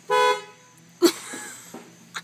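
A car horn honks once, briefly, a sharp blast sounded to startle a passer-by. About a second later comes a sudden loud cry that trails off.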